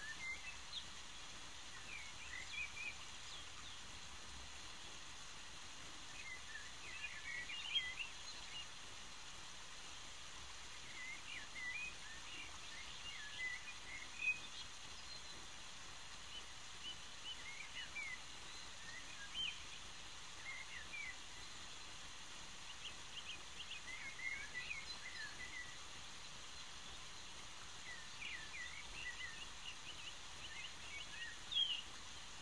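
Faint birds chirping in short clusters every few seconds over a steady background hiss.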